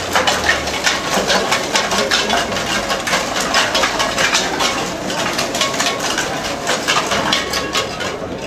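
Costumes hung with recycled cans, bottles and plastic bags being shaken, a dense clatter of small clinks and rustles that starts abruptly and goes on for about eight seconds.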